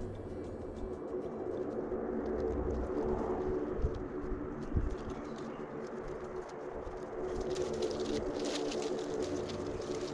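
Doves cooing in the background, with a crackling rustle of coconut palm leaves being handled and woven, thickest in the last few seconds.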